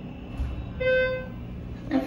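Schindler elevator's arrival signal: a single steady electronic beep, under half a second long, about a second in. A low thump comes just before it.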